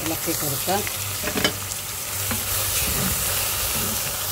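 Wooden spatula stirring sliced onions and tomatoes in an aluminium pressure cooker pot, with a few light scrapes about a second and a half in over a steady hiss.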